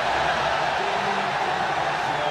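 Steady rushing noise of a moving vehicle and wind, with faint music just audible underneath.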